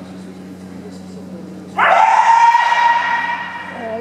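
A kendo fencer's kiai: one long, high-pitched shout that starts sharply a little under two seconds in, swoops up at the start, then holds for about a second and a half before fading.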